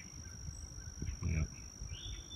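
A steady high-pitched insect drone, such as crickets in the grass, runs throughout, with a brief spoken 'yep' a little over a second in.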